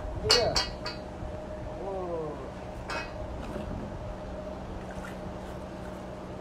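Sharp metallic clinks from a wire fish stringer being handled: three quick clinks just after the start and one more about three seconds in, over a faint steady hum. A brief voice-like sound comes about two seconds in.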